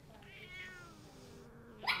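Scottish Fold cat giving one short, slightly falling meow about half a second in, protesting being restrained for a nail trim, with a short sharp click near the end.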